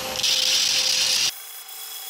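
Belt grinder running with a steel kitchen-knife edge pressed against the abrasive belt, grinding to reshape the edge profile into a straight line with a rounded curve. A loud grinding hiss holds for about a second, then drops to a quieter, thinner run.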